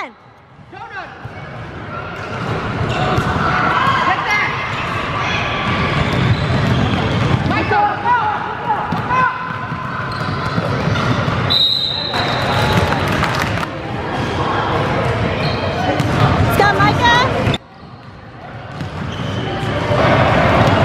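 A basketball bouncing on a hardwood gym floor during youth game play, with children's and spectators' voices echoing in the hall. A short whistle blast comes about halfway through.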